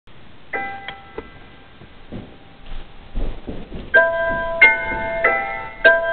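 Piano music: a few single notes near the start, then a gap with several soft low thumps, then held piano chords ringing from about four seconds in.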